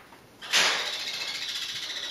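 A rapid rasping, rubbing noise that starts suddenly about half a second in and carries on steadily.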